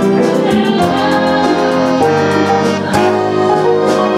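Musical-theatre pit orchestra with piano keyboard playing an upbeat number under singing, over a fast, even ticking beat. A single sharp hit sounds about three seconds in.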